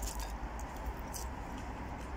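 Faint chewing of a piece of crispy bacon, a few soft crunches, over a steady low background hum.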